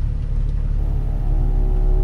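Steady low engine and drivetrain rumble inside the cabin of an off-road SUV crawling down a steep rock trail. About a second in, sustained music notes come in over it.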